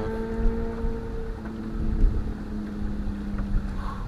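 Steady hum of a boat motor holding two pitches, the higher one fading about a second and a half in, over a low rumble of wind on the microphone.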